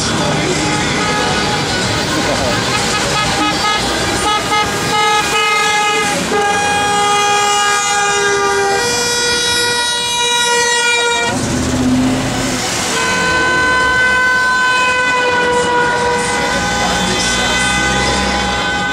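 Car horns of a wedding convoy honking in celebration: several horns hold long overlapping blasts at different pitches, with a short noisier gap about two-thirds of the way through before the horns sound again.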